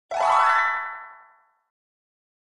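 A short cartoon "boing" sound effect: one springy pitched tone that swoops upward and fades out within about a second and a half.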